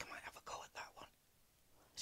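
Faint, breathy murmured speech in the first second, then near silence: room tone.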